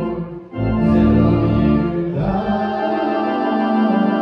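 Hymn singing by two men on microphones, with organ accompaniment. There is a brief break between phrases about half a second in, then the singing and organ carry on steadily.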